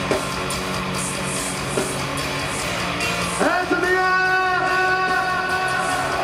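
Deathcore band playing live through a concert PA, with heavily distorted guitars and drums. From about three and a half seconds in, a long held high note rings over the band.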